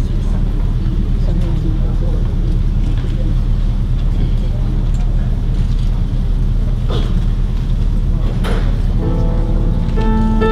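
A steady low rumble with faint murmuring and a couple of light clicks, then near the end a piano begins playing sustained chords: the introduction to the choir's song.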